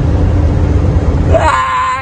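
Steady engine and road drone inside a moving vehicle's cab, with a low hum. About one and a half seconds in it cuts off abruptly and a high voice with a wobbling, wavering pitch takes over.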